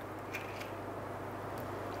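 Quiet room with a low steady hum and a few faint, soft clicks of a spoon scooping avocado flesh into a blender jar.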